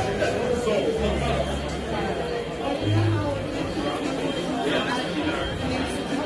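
Indistinct chatter of many people in a busy shop, with short low rumbles about a second in and again near three seconds.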